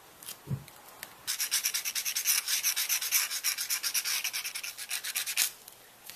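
Rapid, even back-and-forth rubbing strokes on paper, starting about a second in and stopping suddenly after about four seconds.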